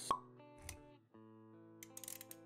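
Sound effects for an animated intro over music: a sharp pop just after the start, a short low thud around the middle, then held musical notes with a few quick clicks near the end.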